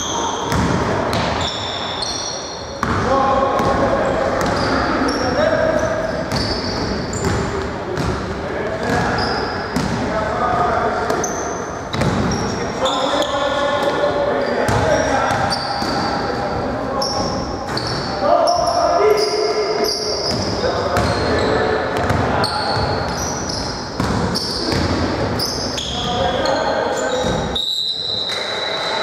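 Live basketball play in an echoing gym hall: players' voices calling out, the ball bouncing on the hardwood floor, and many short, high sneaker squeaks.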